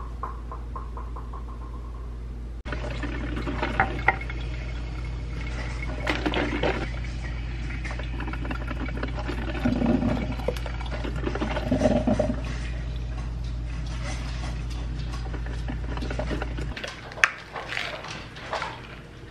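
Shower water running steadily in a small bathroom over a low hum, with a few bumps and knocks along the way.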